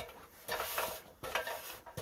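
Light metallic clinks and scraping from an aluminium extension ladder being handled and stepped off, with a few short knocks.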